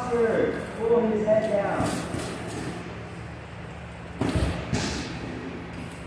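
A person's voice in the first two seconds, then two heavy thuds about half a second apart a little past the middle: strikes landing on a hanging heavy punching bag.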